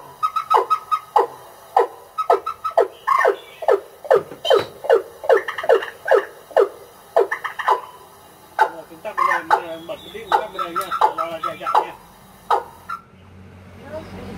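Recorded bird calls played loudly through horn loudspeakers from a bird-trapping amplifier: a rapid series of short notes, each sliding down in pitch, then a more warbling phrase about nine seconds in. The playback stops about a second before the end.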